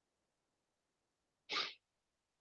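Near silence broken by a single short, sharp breathy burst from a person about one and a half seconds in.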